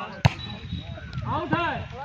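A single sharp smack of a hand striking a volleyball a moment after the start, followed by players shouting to each other.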